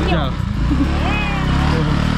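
A small motorcycle engine runs steadily at low revs as a scooter pulls away on a dirt track, with people talking over it.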